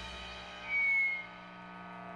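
Steady hum and ringing from the band's amplified instruments in a pause between songs, with several tones held together and slowly fading. About two-thirds of a second in comes a short high whistle-like tone lasting about half a second.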